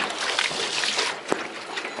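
Water sloshing and trickling around a small rowboat as it is rowed, with one sharp knock a little past one second in.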